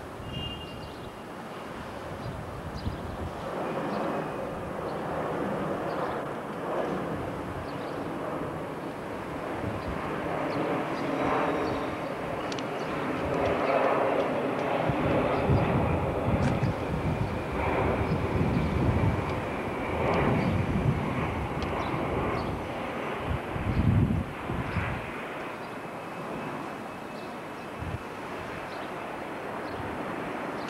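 Outdoor city ambience heard from a rooftop: a steady rumble of traffic and machinery that swells through the middle and eases off about 25 seconds in, like a large vehicle or aircraft passing.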